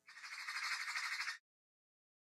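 A single harsh, raspy, squawk-like sound effect lasting about a second and a half that cuts off suddenly.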